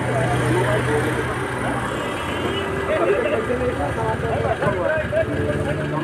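Several people talking at once in the background, over a steady low hum that fades in the middle and returns near the end.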